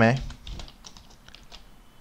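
Typing on a computer keyboard: a run of light, scattered keystrokes.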